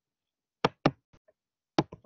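A few short, sharp taps: two close together a little after half a second in, a faint tick, then one more near the end.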